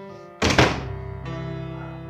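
A single loud thud about half a second in, dying away quickly, over background music that holds steady sustained chords.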